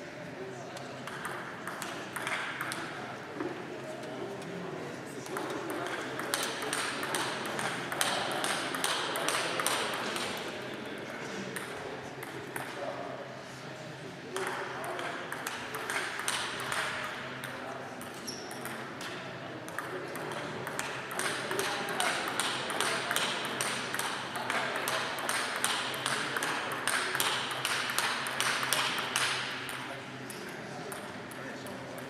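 Table tennis rallies: a celluloid ball clicking back and forth between paddles and the table in quick, regular runs, with a couple of long rallies and short breaks between points.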